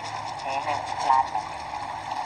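Brief speech, a few words in Thai, over steady outdoor background noise.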